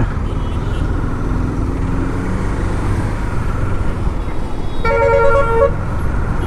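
Steady wind and engine noise from a KTM Duke 390 single-cylinder motorcycle riding at road speed. A vehicle horn sounds once for about a second near the end.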